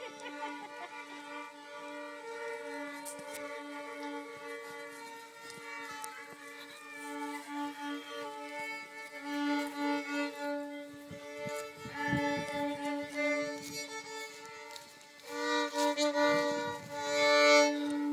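Fiddle bowed in double stops for drone practice: a steady drone note held under a melody that steps between notes. It is faint through the first half and louder in the last few seconds.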